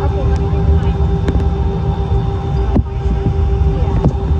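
Cabin noise inside an Airbus A319 moving on the ground: a steady low rumble from the engines and airframe with a constant hum over it, and a couple of sharp knocks about a second in and near three seconds.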